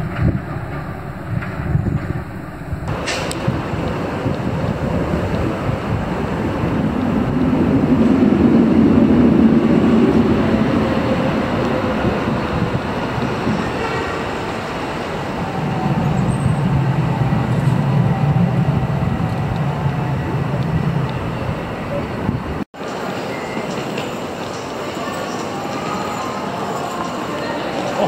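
Busy city street traffic: a steady wash of road noise with vehicles passing, swelling loudest about a third of the way in and again past the middle. Near the end it cuts suddenly to a quieter, more even background.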